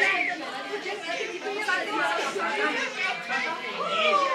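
Overlapping chatter of a roomful of young children and adults talking at once, with high children's voices among it.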